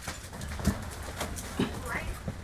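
Handling noise from studio gear being moved: a few light knocks and clatters from a folding metal frame and a large board, over a low steady hum.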